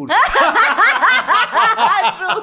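A woman laughing hard: a loud, rapid run of high laughs, about five a second.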